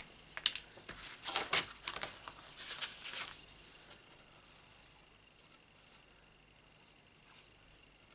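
Sheets of card stock being handled and set down on a craft mat: a run of light paper rustles and taps over the first three seconds or so, then quiet room tone with a faint steady high tone.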